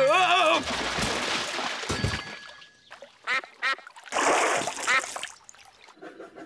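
Cartoon sound effects for a runaway bicycle whose brakes have come loose: a wavering yell, then a long rushing noise with a low thud about two seconds in. A few short nasal calls follow near the end.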